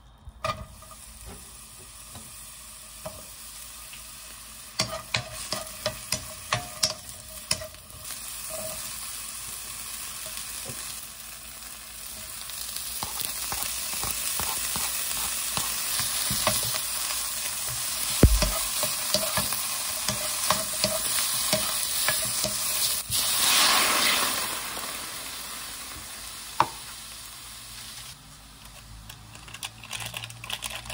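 Sliced onion, mushrooms and ham sizzling in oil in a nonstick pan as they are stirred with a spatula, with a quick run of spatula taps against the pan about five seconds in. The sizzle grows louder partway through, is strongest about three-quarters of the way in, then dies down near the end.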